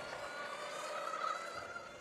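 Motorcycle engine running as the bike rides along: a steady, high-pitched buzzing drone with no deep note, rising slightly in pitch about a second in.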